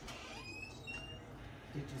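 A door opening, its hinge giving a few short, high, slightly rising squeaks in the first second.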